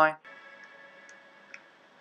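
A man's last spoken word, then a faint steady hum with a few thin high tones and one soft click about one and a half seconds in.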